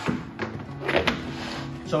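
A few short knocks and thunks of hard plastic food buckets and their lids being handled, over background music.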